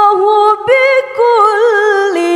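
Solo, unaccompanied Quran recitation in the melodic tilawah style: a single voice holds long ornamented notes that waver up and down, with two short breaks about half a second and a second in.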